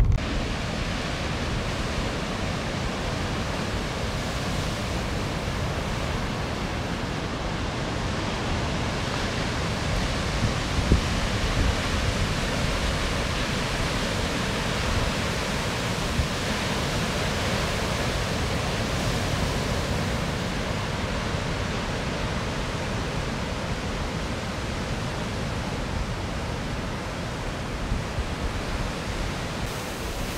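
Ocean surf: waves breaking and washing, a steady rushing noise with no distinct strokes.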